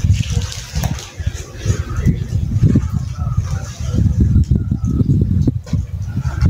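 Wet concrete mix poured from a bucket into a hole in a concrete floor, sloshing and splashing as it fills the hole, over an irregular low rumble.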